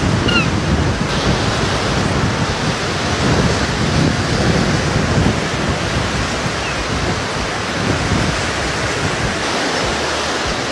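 Wind buffeting the microphone over waves breaking on a beach: a loud, steady rush of surf and wind with gusty low rumbles.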